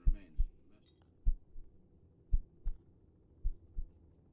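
A slow heartbeat as a sound effect in an ambient mix: deep double thumps, lub-dub, about once a second. A few faint high metallic clinks sound over it.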